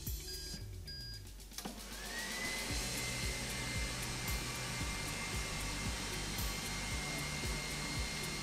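Tefal ActiFry 2 in 1 air fryer starting up: about two seconds in, its hot-air fan spins up with a rising whine that settles into a steady high whine over a rushing of air, as it starts cooking.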